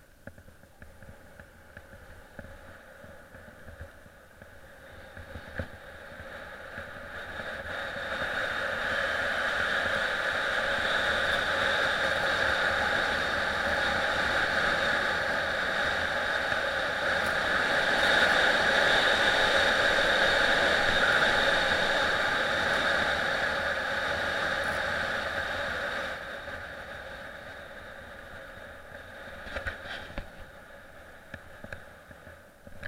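Steady rushing noise of skiing downhill on groomed snow, the skis running over the snow and air rushing past the camera. It builds over a few seconds as speed picks up, holds, then dies away near the end as the slope flattens.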